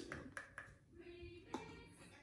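A few soft clicks and taps of small plastic chemistry-kit pieces being handled on a tabletop, with a brief faint murmur of a voice in the middle.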